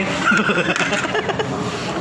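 Indistinct talking and chuckling from more than one person, voices overlapping.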